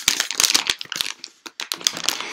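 Plastic wrapping crinkling with irregular crackles as a package is handled in the hands, easing briefly around the middle.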